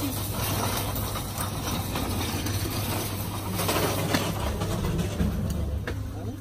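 Wheeled shopping basket trolley rolling and rattling over a tiled supermarket floor, over a steady low hum.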